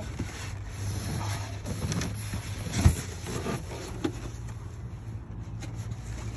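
A styrofoam packing lid being worked loose from a cardboard box and lifted off, with scrapes and rustles and one sharp thump about three seconds in. A steady low rumble runs underneath.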